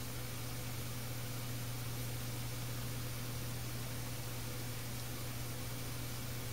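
Steady low hum under an even hiss: room tone, with nothing changing through the stretch.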